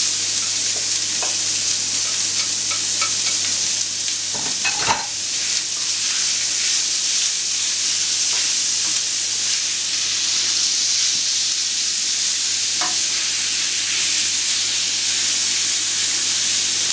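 Raw minced pork and fried onion sizzling steadily in a hot frying pan as the freshly added meat is stirred with a wooden spatula, with a couple of short knocks of the spatula against the pan.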